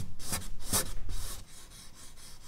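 A charcoal stick scratching across medium-surface drawing paper in quick shading strokes. The strokes are louder for about the first second and a half, then go on more lightly.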